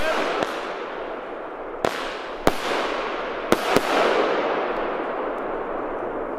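A 25 mm consumer fireworks cake firing brocade-crown shots. Five sharp reports come at the start, near 2 seconds and in a quick pair about 3.5 seconds in, over a rushing noise that swells and then slowly fades.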